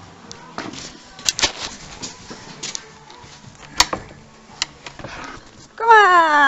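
Scattered light clicks and knocks of handling and moving about, then near the end a wooden door's hinges creak open with one loud squeal that falls in pitch.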